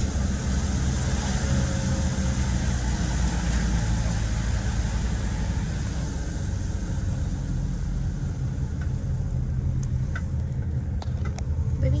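Camper van driving, heard from inside the cab: a steady low engine and road rumble with tyre hiss over it. The hiss thins out in the second half, and there are a few faint clicks near the end.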